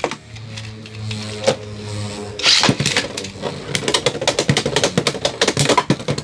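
Beyblade X spinning tops in a plastic stadium. From about three seconds in there is a fast, dense run of clicks and clatter as the tops spin and hit each other, over background music.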